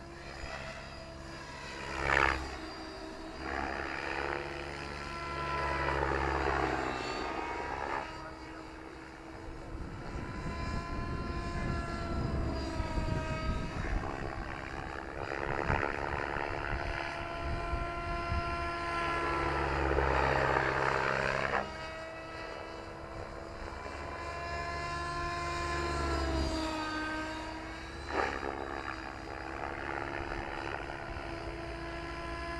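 Electric RC helicopter flying 3D manoeuvres in the distance. Its rotor and motor whine keeps rising and falling in pitch, with repeated swells of louder blade noise as the collective is pumped under load.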